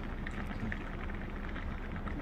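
A herd of American bison moving along a paved road: a steady low rumble and patter with faint, irregular hoof knocks on the asphalt.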